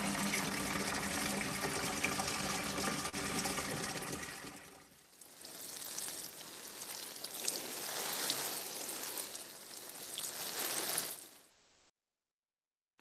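Recorded sound effect of water pouring and trickling, in two stretches with a short break about five seconds in, played back through a video call.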